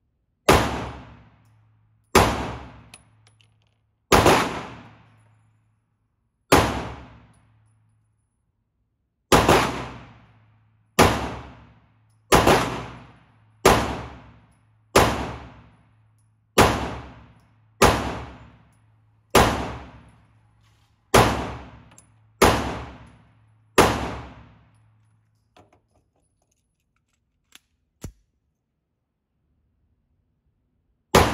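Steyr C9-A1 9mm pistol fired in slow single shots, about fifteen shots one to three seconds apart, each ringing off in the echo of an indoor range. Two faint clicks come near the end.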